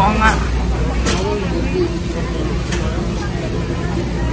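Busy warehouse-store ambience: chatter of shoppers' voices over a steady low rumble of a loaded shopping cart rolling on a concrete floor, with a few sharp clicks and rattles.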